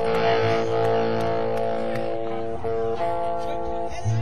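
Electric guitar holding long, ringing notes as a song begins in a live rock band recording, the notes changing briefly twice past the middle.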